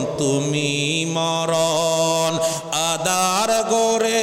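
A man's voice chanting in a drawn-out melodic style: long held notes that bend and glide in ornamented turns, with no breaks into ordinary speech.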